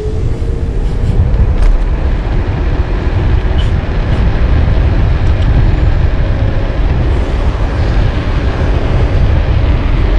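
Wind noise on the microphone of a handlebar-mounted action camera on a bike ridden at full throttle: a loud, unsteady low rumble with an even hiss above it.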